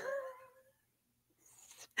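A short, high-pitched laughing squeal from a person, trailing off within about half a second.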